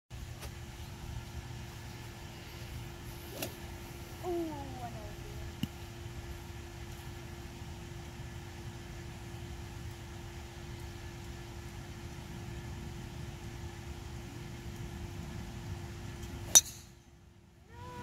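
A golf driver striking a teed ball: one sharp, loud crack near the end, over a steady low background hum.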